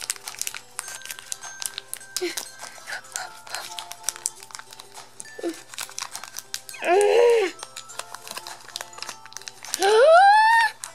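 Plastic blind-bag wrapper crinkling and rustling as it is pulled open by hand, a dense run of small crackles, over faint background music.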